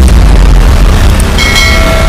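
Subscribe-button animation sound effects: a loud rushing, rumbling whoosh, then a bright bell-like chime about one and a half seconds in that rings on.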